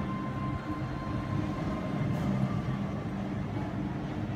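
Roller coaster train rumbling steadily along its steel track, swelling slightly about two seconds in.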